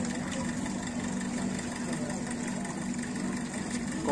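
A steady low mechanical hum of an engine or motor running at idle, holding two even low tones without change.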